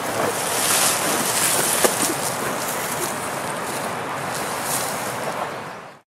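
Steady, even rushing outdoor noise, with one brief click a little under two seconds in. It fades out just before the end.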